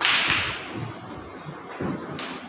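A sudden short swish of something brushing close to the microphone, fading away within about half a second, followed by a faint click about a second later.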